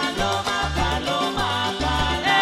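Sonora-style cumbia band playing, with a bass note pulsing on a steady beat under sustained melody lines.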